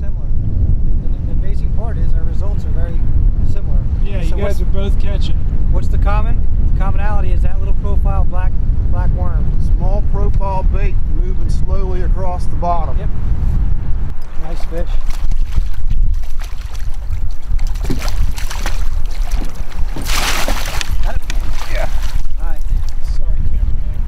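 Strong wind buffeting the microphone over a boat on choppy water, a heavy rumble through the first half, with indistinct talking mixed in. Near the end comes a short rushing hiss of noise.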